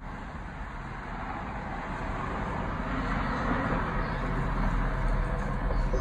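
Road traffic noise: a steady rush of passing vehicles that slowly grows louder.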